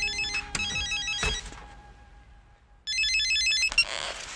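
Electronic telephone ringer trilling in quick alternating tones. It rings twice: one ring dies away in the first second and a half, and a second ring comes about three seconds in.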